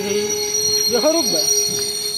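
Passenger train coaches braking to a halt, with wheels and brakes giving a steady high-pitched squeal as the train stops.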